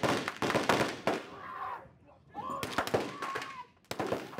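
A dense run of sharp cracks and pops, like firecrackers, from staged film-set gunfire effects. It is thickest in the first two seconds; after a brief lull a voice shouts over more scattered cracks.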